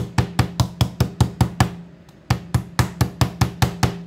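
Wooden meat mallet with a textured metal head pounding slices of boiled beef on a bamboo cutting board, to soften and flatten the meat. It strikes rapidly and evenly, about five blows a second, in two runs with a brief pause near the middle.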